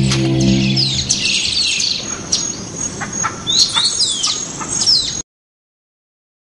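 Birds chirping, with many short high calls that fall in pitch, over a low held tone that fades out in the first second or so. The sound cuts off suddenly about five seconds in.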